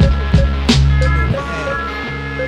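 Music with a deep sustained bass line, a drum hit about every third of a second and held high synth tones; the bass and drums drop out about two-thirds of the way in, leaving the held tones.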